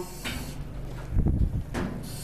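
Short hisses of breath through a firefighter's SCBA mask, one near the start and one just before the end, with the rustle and bump of turnout gear moving in between.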